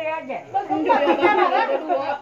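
People talking and chattering, several voices overlapping.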